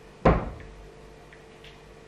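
A single loud thump, like a cupboard or door shutting, a quarter second in, dying away within half a second.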